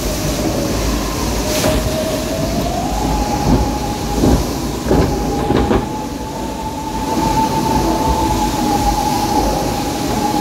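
Log flume ride machinery rumbling steadily in the dark, like a train. A held whine steps up in pitch about three seconds in and then holds, with a few knocks through the middle.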